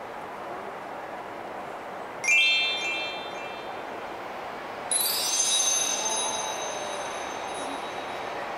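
Chime sound effects from a Christmas light-show installation: a quick rising run of bell-like tones about two seconds in, then a second, higher cluster of ringing tones about five seconds in that slowly fades. Both sit over steady background noise.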